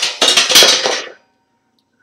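Metal bed-frame parts clattering and clinking together as they are handled, for about a second, with a faint metallic ring dying away after.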